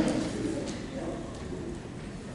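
A faint, low hummed voice, like an "mm", trailing off in the first second or so, then quiet room tone.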